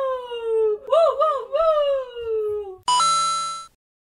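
A woman's voice whooping a wavering 'woo-woo-woo' twice, each phrase ending in a long falling glide, followed near the end by a short electronic chime sound effect.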